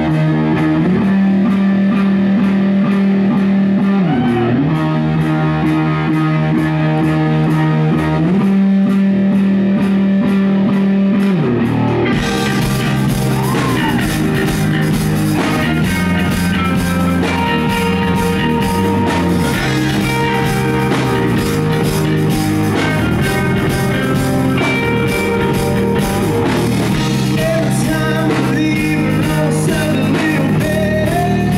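Live rock band starting a new song: electric guitar plays held chords alone for about twelve seconds, then drums and bass come in with the full band. The sound is loud and distorted, with heavy bass from subwoofers close to the recorder.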